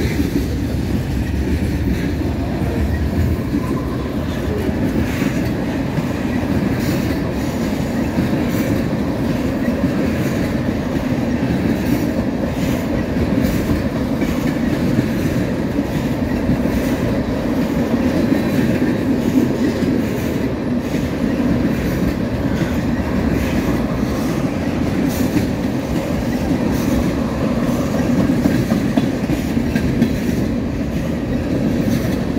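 Norfolk Southern mixed manifest freight cars (tank cars, covered hoppers and boxcars) rolling past at close range: a steady rumble of steel wheels on rail, with irregular clicks and clacks as the wheels cross rail joints.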